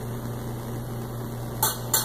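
Steady low hum and hiss of room background while top agar is poured onto a plate, then two light clicks near the end as the glass culture tube and plastic petri dish are handled.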